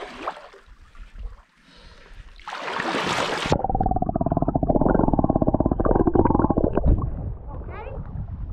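Water splashing as the microphone plunges under the surface about two and a half seconds in, then a sudden change to a muffled underwater rumble with dense crackling bubbles, churned by swim fins kicking, for about three and a half seconds before it surfaces again.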